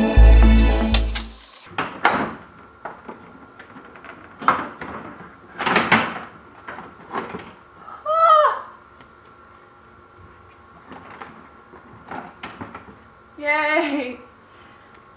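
Background music that stops about a second and a half in, then several short plastic knocks and scrapes as a 2017 Honda Civic's front bumper trim is worked loose by hand. A woman gives two short vocal exclamations, one about eight seconds in and one near the end.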